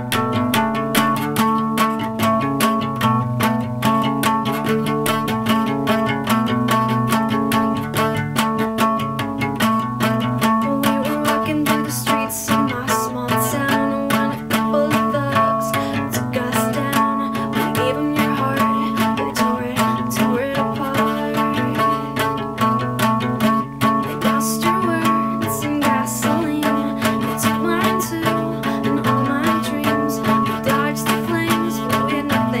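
Steel-string acoustic guitar playing the instrumental introduction of a song, a steady run of picked notes and chords.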